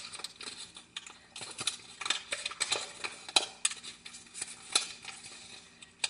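Sheet of origami paper crinkling and crackling in irregular bursts as it is folded inside out by hand, the paper wrinkling as it is meant to at this step. The crackles thin out near the end.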